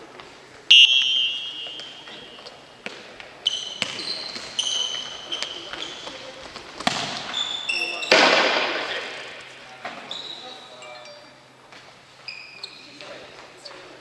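Futsal ball being kicked and bouncing on a sports hall's wooden floor, with sneakers squeaking sharply as players turn, all echoing in the large hall. The loudest knocks come about a second in and about eight seconds in.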